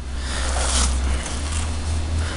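Cloth rustling as a katana in a soft felt sword bag is handled and lifted out of its fabric-lined wooden case. It is a continuous, even rustle, a little brighter about half a second to a second in.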